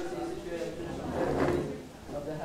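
Indistinct talking of people in the room, with a short scraping, clattering sound a little over a second in.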